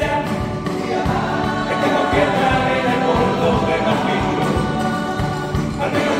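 A carnival comparsa's all-male choir singing a medley in harmony, with guitars and a steady beat underneath.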